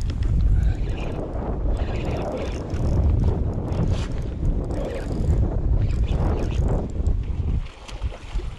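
Wind buffeting the microphone in gusts, a loud low rumble that eases briefly near the end, with a few faint ticks.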